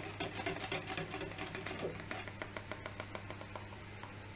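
Wire whisk beating batter in a plastic mixing bowl: rapid, irregular clicking of the wires against the bowl, busiest in the first half and thinning out toward the end.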